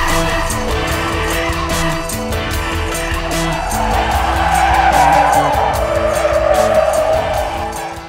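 Chevrolet Corvair's tyres squealing as the car is swung hard back and forth and its tail slides out, building up about halfway through and wavering. Background music with a steady beat plays underneath.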